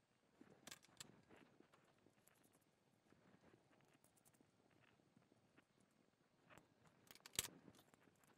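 Near silence with a few faint clicks and small metal knocks: a hex key turning a screw into the end of an aluminium extrusion and the bar being handled, with one sharper knock about a second before the end.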